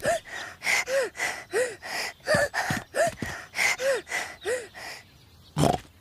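A cartoon piglet's voice panting, out of breath after running: a run of short voiced huffs, about one every 0.7 seconds, that stops about five seconds in. A brief breathy sound follows near the end.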